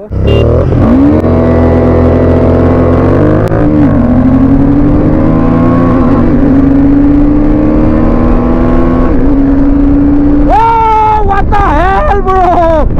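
KTM 390 Adventure's single-cylinder engine accelerating hard at full throttle, the pitch climbing and dropping back at each upshift, about three times. A voice is heard over it near the end.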